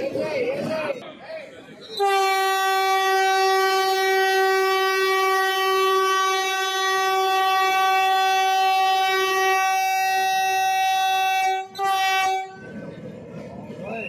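Vande Bharat Express train horn sounding one long steady blast of about ten seconds, starting about two seconds in, followed by a brief second blast that cuts off near the end.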